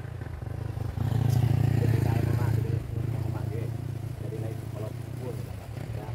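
A small motorcycle passing close by, its engine growing louder about a second in and loudest until nearly three seconds in, then dying away.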